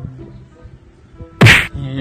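Quiet background music, then about one and a half seconds in a single loud, sharp smack.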